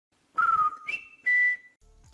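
Three short whistled notes, each with some breath noise: a middle note, a higher one, then one a little lower.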